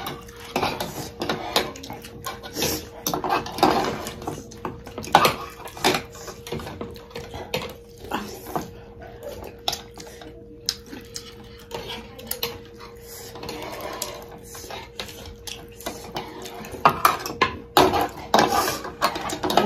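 Metal spoons and forks clinking and scraping against bowls as people eat, in short irregular clicks throughout, over a faint steady hum.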